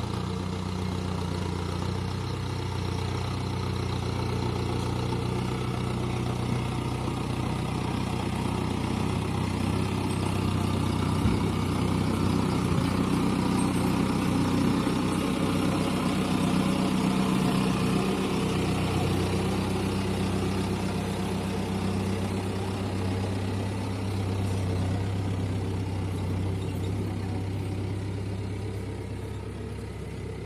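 Mahindra Arjun Novo 605 DI tractor's four-cylinder diesel engine running steadily while it works a dozer blade through loose soil. It is louder around the middle as the tractor comes close and fades near the end as it moves away.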